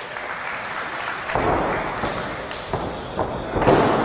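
Heavy thuds on a wrestling ring's canvas mat, three in the few seconds with the loudest near the end, over steady crowd noise in a hall.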